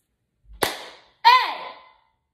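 A single sharp bang, then a loud, short cat yowl whose pitch arches and falls away: cats playing rough.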